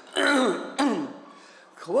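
A man clearing his throat twice at a microphone, then starting to speak again near the end.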